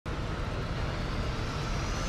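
Cinematic logo-intro sound effect: a dense rumble with a hissing wash over it, starting abruptly, with a faint rising whistle near the end.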